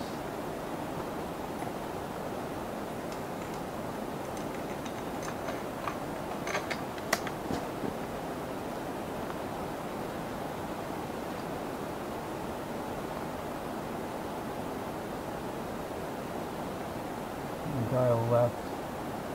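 Steady outdoor wind noise on the microphone, a constant rushing hiss, with a few faint clicks in the first half.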